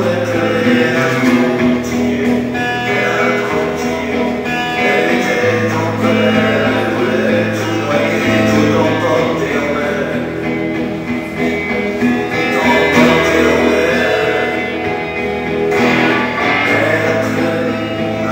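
Acoustic guitar strummed in a steady rhythm while a man sings along, a live solo song.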